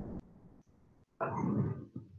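Clip-on lapel microphone rubbing against a sweater as the wearer moves: two muffled rustling noises, the first ending just after the start and the second about a second later.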